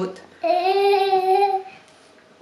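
A young child's voice holding one long, high, steady note for just over a second, sung or drawn out rather than spoken.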